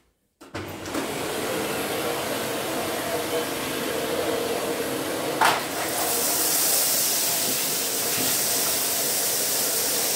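Philips Power Cyclone 4 XB2140 bagless canister vacuum cleaner with an 850 W motor, switched on just after the start and then running steadily with a constant hum and rushing air. About halfway through there is a short knock, then a brighter hiss as the floor nozzle works over a tiled floor strewn with lentils, rice and sugar.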